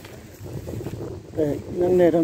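Low rumble of wind on the microphone, then a person's voice comes in about one and a half seconds in and grows louder.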